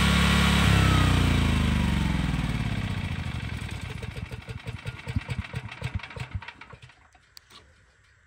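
Generac portable generator engine shut off by remote: it runs steadily, then about a second in cuts out and coasts down, its beat slowing and fading over several seconds until it stops about seven seconds in.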